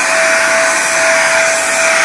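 Handheld electric sprayer running steadily, a rushing hiss with one steady whine over it, as it mists DTG pre-treat solution onto a black cotton shirt.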